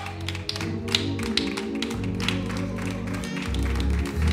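Church band music: held low keyboard and bass notes that shift twice, under quick, uneven percussive hits.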